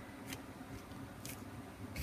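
Faint room hum with two brief soft rustles, about a quarter second in and again just over a second in, from hands pressing an inked plastic mesh stencil down onto paper.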